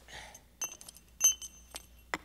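Several sharp, irregular clinks of hard objects, each with a brief bright ring, the loudest just past halfway.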